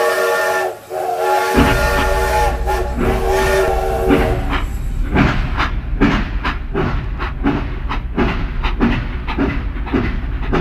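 Battery-operated toy steam locomotive playing its electronic whistle sound, a steady held tone that stops about four seconds in. Its motor starts about a second and a half in and the train runs along plastic track with an even clicking rhythm, about two to three clicks a second.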